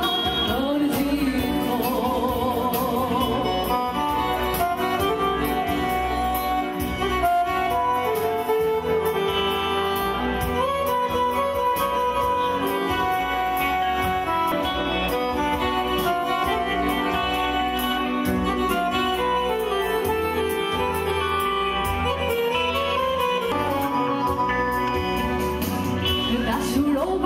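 Live Albanian Korçë serenade (serenatë korçare): a woman singing with keyboard and guitar accompaniment. Her voice is clearest near the start and again toward the end, with a stretch of steadier instrumental melody in between.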